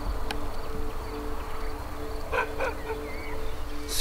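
Outdoor field ambience: low wind rumble on the microphone under a steady low hum, with two short animal calls about two and a half seconds in and a brief bird chirp just after.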